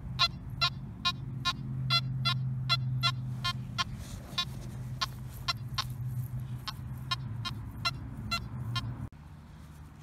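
Nokta Makro Anfibio metal detector sounding as its coil sweeps over a dug hole: a steady low hum under a run of short, sharp beeps, about three a second at first and thinning out later. The target is a small iron nut about three and a half inches down. The sound cuts off shortly before the end.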